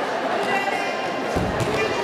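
A handball bouncing a few times on a sports-hall floor in the second half, over shouting voices that echo in the hall.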